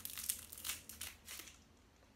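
Thin clear plastic sleeve crinkling as a makeup brush is slid out of it: a run of quick crackles over the first second and a half, then quiet.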